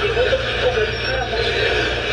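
Speech from the played video clip over a steady low hum.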